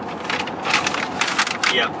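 Paper road map rustling and crinkling in irregular bursts as it is handled and folded inside a pickup truck's cab, over a steady background hum.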